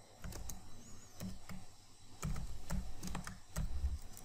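Typing on a computer keyboard: irregular key clicks in short runs, with pauses between them.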